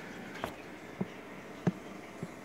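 Faint steady hiss of an aquarium with an air stone bubbling, broken by three short clicks, the loudest near the end.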